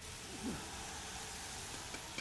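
Quiet room tone: a faint steady hiss, with one brief faint falling sound about half a second in.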